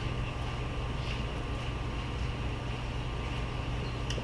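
Steady room tone of a large hall: a constant low hum with an even hiss, typical of the building's ventilation running.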